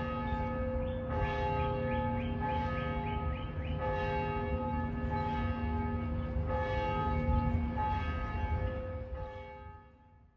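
Several church bells ringing at different pitches, their tones overlapping and changing, with a run of quick strikes early on; the ringing fades out near the end.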